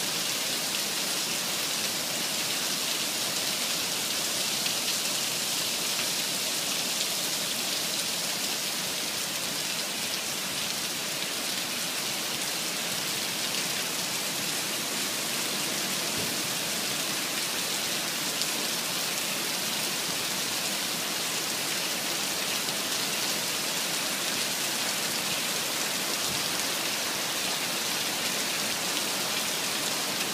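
Heavy rain pouring steadily onto asphalt and standing water: a dense, even hiss that holds level throughout.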